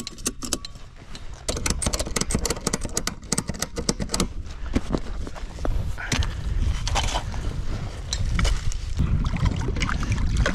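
A ratchet strap cranked tight over jet ski cargo, a quick run of ratcheting clicks about one and a half to four seconds in. Then scattered knocks and scrapes of river stones and a metal anchor being pulled from the bank, and water sloshing as it is rinsed in the shallows.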